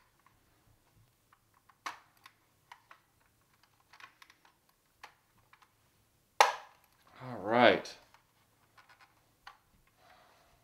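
Light clicks and taps of hard plastic toy parts being handled and fitted, here the gun turret assembly of a 1984 Hasbro G.I. Joe Cobra Rattler, with one sharp click about six and a half seconds in. A short hummed vocal sound follows just after it.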